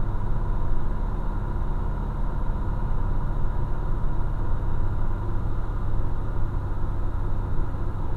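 Heavy truck's diesel engine heard from inside the cab, a steady low drone as the loaded truck descends a grade held back by the engine brake.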